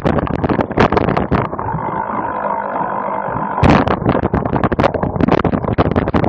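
Cyclocross bike and on-board camera rattling and jolting over a rough dirt course, a dense run of knocks with wind. For about two seconds in the middle the rattling eases to a smoother, steady whirr, then comes back suddenly.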